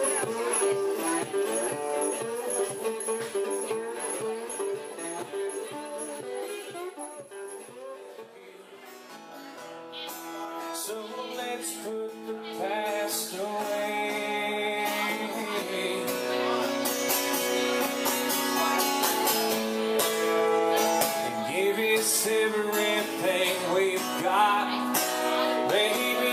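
Live acoustic music: a resonator guitar being picked, fading out about a third of the way in. A man then sings with acoustic guitar backing, growing louder toward the end.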